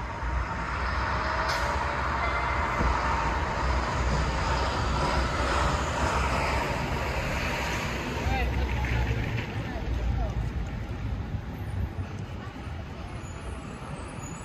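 City street noise: traffic passing on the road alongside, building up over the first few seconds and easing off after about the middle, over a steady low rumble.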